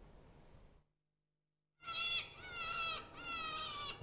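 Audio from a children's electronic book: after a second of silence, three high-pitched falling calls, each about half a second long.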